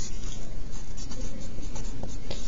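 Mechanical pencil writing on a paper worksheet, the lead scratching along the page.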